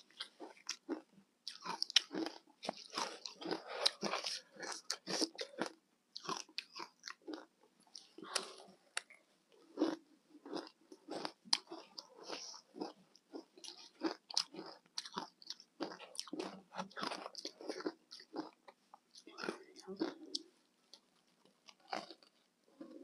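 Close-up crunching and chewing of ice chunks coated in matcha and milk powder, a dense run of irregular crisp crunches.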